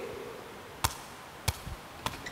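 Woven synthetic sepak takraw ball being headed: two sharp, brief taps about two-thirds of a second apart, in a reverberant hall.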